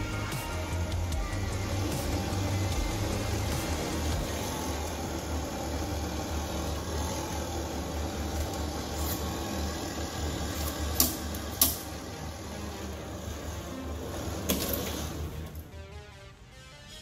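Background music over the steady low hum of a tabletop trailer-sway demonstration rig, its belt running under a model car and caravan, with a few sharp clicks later on.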